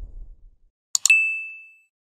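Subscribe-button animation sound effect: a low whoosh fades out, then about a second in a quick double mouse click is followed by a single bright notification-bell ding that rings out and fades within a second.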